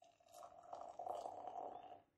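Beer being poured into a glass, starting about a third of a second in, and foaming up into a thick head.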